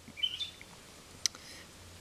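Faint bird chirps in the background, a few short calls early on, with a single brief click a little after a second in.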